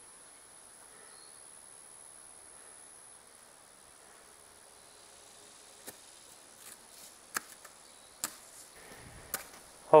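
Shovel digging by hand in a dirt trench: a handful of short, sharp blade strikes and scrapes spread over the second half, above a faint background with a thin high steady whine in the first few seconds.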